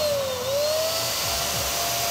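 Electric balloon pump running, blowing air through its nozzle into a foil heart balloon: a steady motor whine over the rush of air. The whine sags in pitch just after the start and climbs back within about a second.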